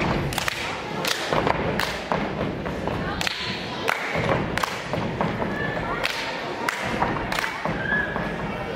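Step team's body percussion: foot stomps on a stage floor mixed with sharp hand claps and slaps, about two hits a second in a syncopated pattern, with no music underneath.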